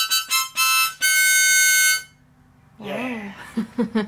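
An old Lone Ranger harmonica being blown: a few short, bright reedy notes, then one held for about a second, stopping about two seconds in. The old harmonica still plays.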